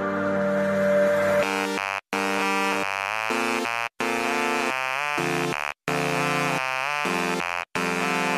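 Electronic intro jingle: a synthesizer tone swells up for about a second and a half, then breaks into choppy chords that step up and down in pitch, cut off by brief dead silences about every two seconds.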